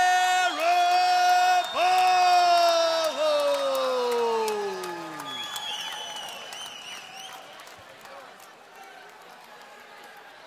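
A ring announcer draws out the winner's surname in one long, held, shouted call that slides down in pitch and dies away about five seconds in, over crowd cheering and applause. A few whistles follow, and the cheering fades.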